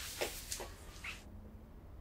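A woman's shaky, breathy exhales: three short catches of breath through the nose and mouth, the last just past a second in, like a held-back sob.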